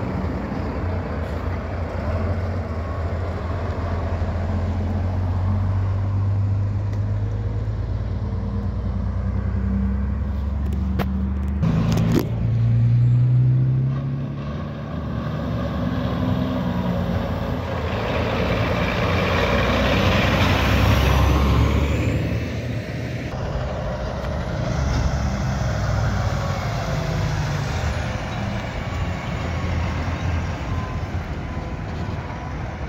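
Heavy diesel trucks driving past one after another, engines running under load with tyre and road noise. Partway through, one engine's pitch climbs as the truck accelerates, and the sound is loudest as a truck passes close in the second half.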